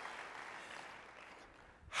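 Audience applause fading away, dying out about a second and a half in.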